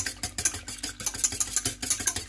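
Wire whisk beating eggs in a stainless steel saucepan: fast, even strokes, the wires clicking against the metal sides about ten times a second.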